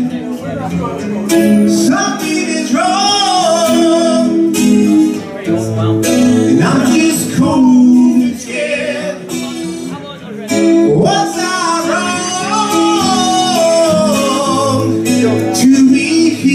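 Live acoustic rock song: a male lead vocal singing over a strummed acoustic guitar.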